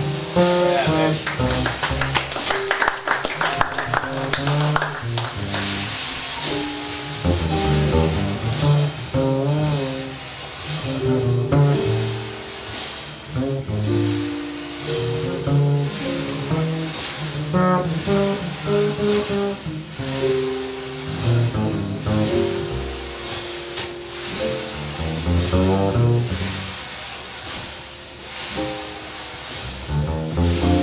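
Slow jazz ballad played live by piano, upright string bass and drums, the drummer brushing the snare.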